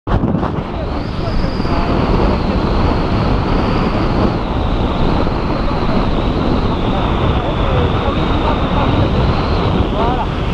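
Strong wind buffeting the camera's microphone during a tandem parachute jump. It is a loud, steady rush, with a thin high whistle over it.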